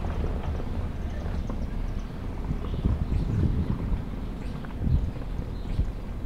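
Footsteps on a city sidewalk, heard through a low rumble of wind and handling noise on a handheld camera's microphone, with a few irregular thumps.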